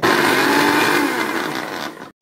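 Countertop blender motor running at speed on pineapple chunks and coconut pieces: a loud, steady whir whose hum sags a little in pitch about halfway through, then comes back up.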